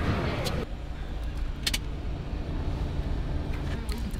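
Steady low rumble of a car heard from inside its cabin, with a single short click about a second and a half in.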